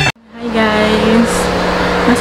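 Music cuts off suddenly, then, after a moment's gap, a steady hum from a small motor begins and runs on under a woman's voice.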